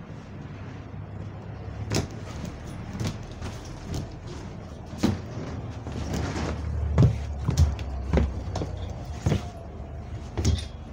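Inside a moving double-decker bus: a steady low drone from the bus that grows louder between about six and eight and a half seconds, with a scatter of sharp knocks and clunks from the bus interior.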